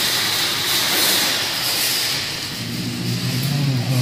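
Claw machine's motors running as the claw drops onto the plush and winches back up: a steady mechanical whir with hiss, joined about two-thirds of the way in by a low steady hum.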